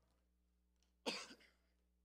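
A man's short cough picked up by his handheld microphone, about a second in, with near silence around it.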